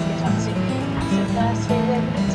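Music with a voice over it, from the panda video's soundtrack.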